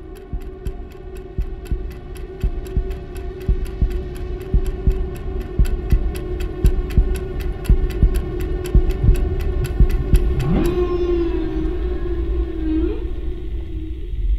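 Suspense sound bed: clock-like ticking about four times a second over a low droning hum and rumble, building in loudness. About ten seconds in, the ticking stops and a long tone glides up, holds with a waver, then rises again near the end.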